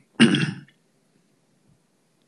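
A man clearing his throat once, a short burst just after the start.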